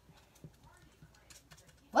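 Faint, scattered light taps and scratches of a felt-tip marker colouring the edge of a piece of paper. A child's voice starts right at the end.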